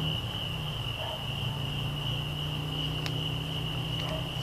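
Crickets chirping in one steady high-pitched trill, over a low steady hum, with a single faint click about three seconds in.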